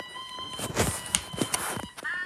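A few short footsteps or knocks in quick succession, over a faint steady electronic tone that fades out near the end.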